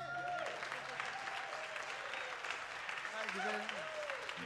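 Small audience clapping, with a few voices calling out.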